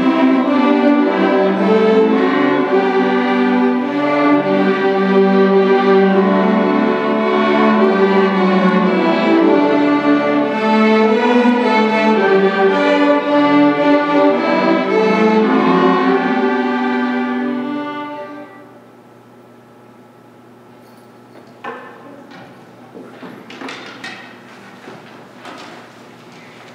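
A school string orchestra of violins, cellos and double basses plays a piece that fades out and ends about eighteen seconds in. After it ends the hall is quiet apart from a few scattered knocks and clicks.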